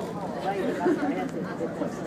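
Indistinct chatter of several people talking at once. Underneath is a steady low hum, typical of a ferry's engines.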